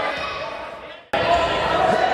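Echoing sports-hall sound of a children's futsal game, with voices and ball thuds on a hardwood floor. It fades out over the first second, then cuts back in abruptly a little past halfway.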